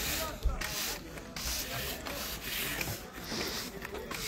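Broom sweeping a dirt path, its bristles scraping in a series of short repeated strokes.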